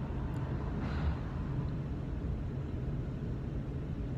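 School bus engine idling, a steady low rumble heard inside the cab, with a faint click about a third of a second in.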